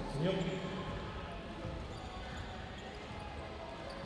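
A basketball being dribbled on a hardwood gym floor, with faint thuds in the echo of a large hall. A voice shouts briefly right at the start.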